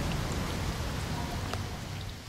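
Steady background ambience: an even hiss with a low rumble underneath and a faint click, slowly dropping in level near the end.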